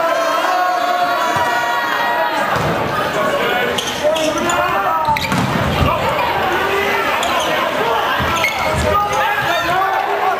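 Volleyball rally on a hardwood gym court: sneakers squeaking and the ball struck a few times, with crowd voices and shouts throughout.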